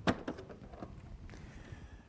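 A sharp plastic click as the latch on the upright vacuum's front cover is lifted, followed by a few fainter clicks and handling noise as the cover is pulled off the body.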